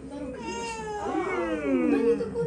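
A baby fussing: a whiny, wavering cry that bends up and down in pitch and gets louder toward the end.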